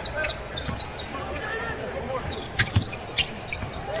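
A basketball bouncing on a hardwood court during live play, with a few short sneaker squeaks.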